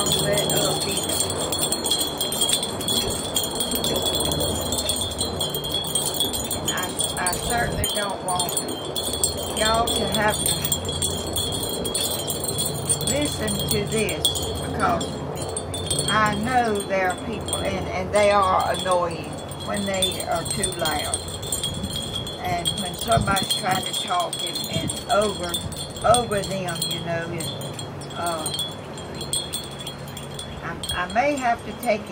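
Wind chimes ringing steadily in a breeze, loud enough to bother the speaker. From about a quarter of the way in they are joined by many short sounds that slide up and down in pitch.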